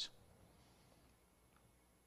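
Near silence: room tone, just after the last of a spoken word fades right at the start.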